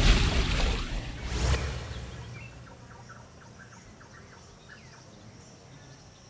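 Logo sting sound effect: a whoosh with sweeping tones at the start, a second sharp swish about one and a half seconds in, then a fading tail with faint short chirps.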